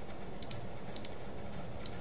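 A few faint, light clicks from a computer's mouse and keyboard over steady low room noise.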